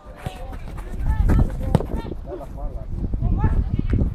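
Players and people at the pitch side shouting during play, over a low rumble of wind on the microphone, with a few sharp knocks, such as the ball being kicked.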